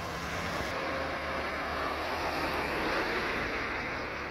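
Road traffic noise: a car passing by on the road, its tyre and engine noise growing louder and easing near the end.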